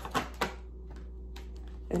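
Tarot cards being handled and laid down on a cloth-covered table: about three sharp card clicks in the first half-second, then a steady low hum underneath.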